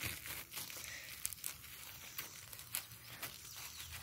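Faint rustling and scattered small crackles of a thumb rubbing and crushing squash bug eggs against a zucchini leaf.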